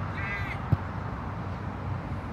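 A single short bird call near the start, over a steady low background rumble, and one sharp knock just under a second in.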